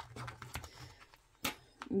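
Faint rustling of a hand handling a fabric crochet-hook case, with one sharp click about one and a half seconds in.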